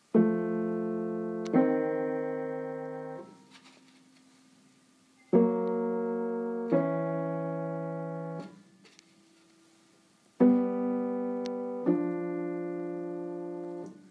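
Upright piano playing the inside-third, outside-sixth tuning test: three times, a third is struck and held, then a sixth is added over it about a second and a half later, and both are released after about three seconds. The pairs move up chromatically, a sequence of fast-beating tempered intervals used to check a note's tuning by ear.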